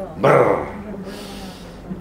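A man's voice: one short, loud vocal burst about a quarter second in, followed by a softer breathy sound.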